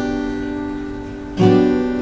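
Acoustic guitar capoed at the third fret: a strummed chord rings and slowly fades, then a second strum about one and a half seconds in rings on.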